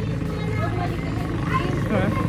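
A steady low engine hum, like a motor idling, runs through, with faint voices over it.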